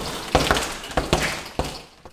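Punches landing on a double-end bag: a quick flurry of sharp hits, about eight in under two seconds, tailing off near the end.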